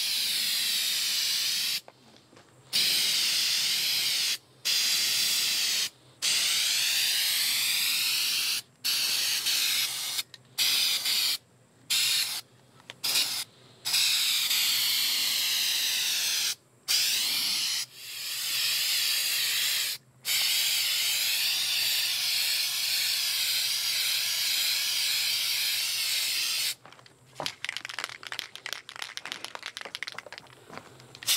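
Aerosol can of Krylon truck bed coating spraying in long hisses, broken by about a dozen brief pauses as the nozzle is let go. The spraying stops near the end, leaving faint scattered ticks.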